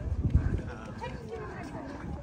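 Faint chatter of people nearby, with a few soft low thumps in the first half-second.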